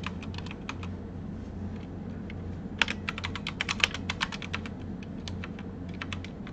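Computer keyboard being typed on: a few keystrokes, a pause of about two seconds, then a quick run of keys, over a steady low hum.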